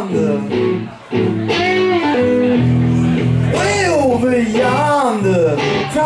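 Electric guitars playing a slow blues, the lead guitar bending notes up and down over steady low chords, with a brief break about a second in.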